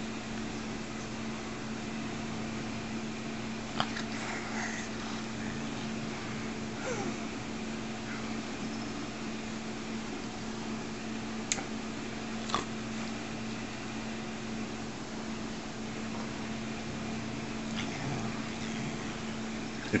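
A steady low mechanical hum, with a few isolated sharp clicks.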